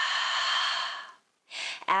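A woman's long audible exhale through the open mouth, a breathy sigh lasting just over a second and fading out, followed near the end by a short breath in.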